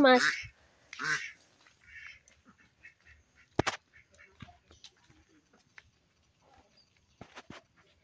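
Footsteps and scattered light ticks on a dirt path, with one sharp click about three and a half seconds in. A short call from farm fowl is heard about a second in.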